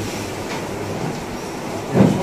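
Steady background noise in a room, with no speech; speech starts again right at the end.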